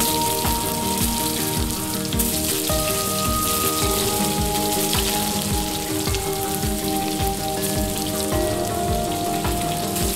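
Marinated chicken pieces sizzling in hot oil in a frying pan, a steady crackling hiss like rain on a surface. Soft background music of held chords plays under it.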